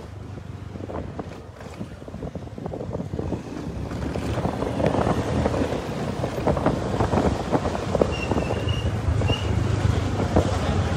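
Wind buffeting the microphone of a camera riding along a street, over the low steady drone of a small motorbike engine, getting louder from about halfway in.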